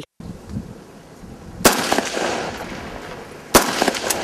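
Pistol shots fired at a target from 25 metres: two sharp shots about two seconds apart, each trailing off in a long echo, and a fainter shot just before the end.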